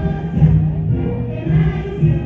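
Many voices singing a song together as a group, holding long sustained notes.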